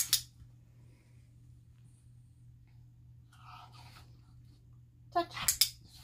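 A woman's voice in short bursts, one at the start and a quick run near the end, with sharp hissing edges like brief marker words or praise. A steady low room hum runs underneath.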